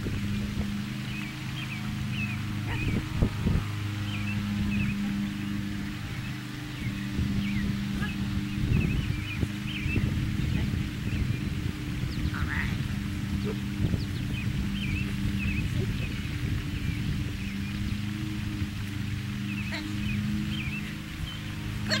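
Outdoor ambience: short bird chirps throughout over a low steady hum that swells and fades about every three seconds, with wind rumbling on the microphone. A single brief rising call sounds a little past twelve seconds in.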